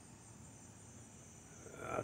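Faint, steady insect chorus, an even high-pitched trilling in the background, with a man's voice starting just at the end.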